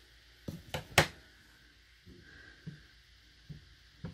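Plastic Memento ink pad case being handled: a few short light clicks and knocks, the loudest about a second in, then a couple of fainter taps.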